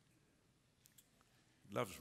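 Quiet room tone broken by two faint, short clicks close together about a second in, then a man's voice begins.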